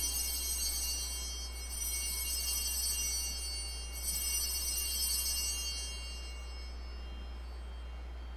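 Small high-pitched altar bells rung three times as the chalice is elevated at the consecration, each ring fading out, the last dying away about six seconds in. A steady low hum runs underneath.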